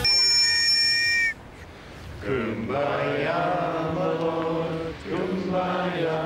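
One long blast on a metal whistle, a steady shrill tone that cuts off sharply after just over a second. A group of voices then follows in unison in long held notes.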